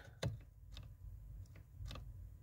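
A few faint, short clicks from a plastic brake light switch handled in the fingers, its plunger being worked; the new switch's plunger is stuck half open.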